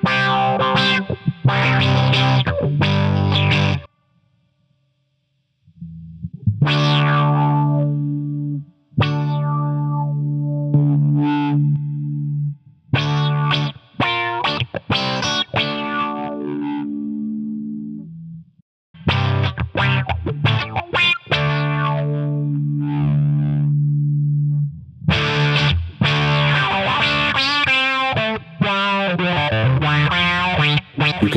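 Electric guitar played through a Subdecay Prometheus 3 dual filter pedal with its distortion placed before and then after the envelope filter: driven chords and riffs in phrases broken by short pauses, one silent gap about four seconds in. Near the end the filter sweeps audibly on each note. The pre-filter and post-filter distortion sound different, as an overdrive does before or after a wah.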